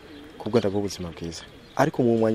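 Speech: a low-pitched voice talking in short phrases, with a brief pause just before the end.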